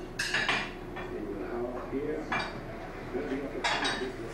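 A few sharp clinks of hard objects knocking together, spread over the few seconds, each ringing briefly.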